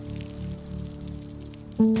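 Steady rain sound effect over soft held background-music notes. Near the end a louder pitched note comes in suddenly.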